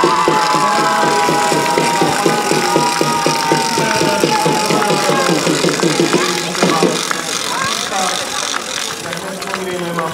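Spectators clapping in rhythm, about four claps a second, under a long held note that slowly falls. The clapping stops about seven seconds in, leaving scattered voices.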